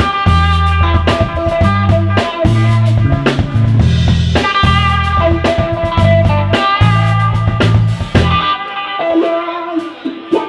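Live three-piece rock band playing instrumentally: electric guitar, electric bass and drum kit. Near the end the bass drops out, leaving the electric guitar playing mostly on its own.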